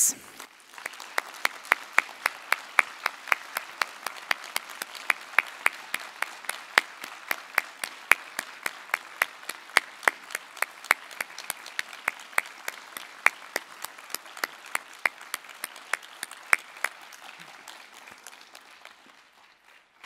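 Audience applauding: a steady patter of many hands, with a few loud claps close by standing out about three times a second. It dies away near the end.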